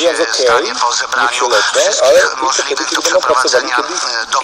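Continuous talk from a radio broadcast: a person speaking without a pause.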